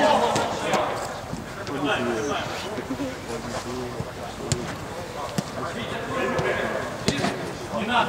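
Players' voices calling on the pitch, with a few sharp thuds of a football being kicked; the loudest thud comes about seven seconds in.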